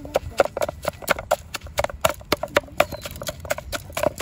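Wooden pestle pounding chilies and greens in a metal pot, about four to five knocks a second, each knock with a short metallic ring.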